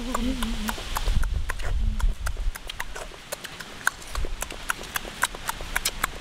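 A short hummed "mmm" at the start, then irregular sharp clicks, several a second, of a mouth chewing and smacking on crunchy cooked shrimp.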